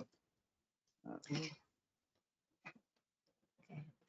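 Near silence on a video-call line, broken by a quiet hesitant 'uh' about a second in and a single faint click a little later.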